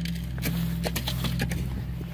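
Steady low mechanical hum with a few faint clicks.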